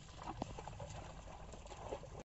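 Bullocks' hooves and a man's feet squelching and splashing through a flooded paddy field as the plough is drawn through the mud. A few sharp wet clicks come about half a second in, over a steady low rumble.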